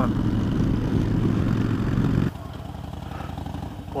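2009 Harley-Davidson Dyna Fat Bob's Twin Cam V-twin with Vance & Hines Short Shots exhaust, running steadily at cruising speed on the highway. About two seconds in it cuts off suddenly to the quieter sound of the same bike's engine running at a standstill.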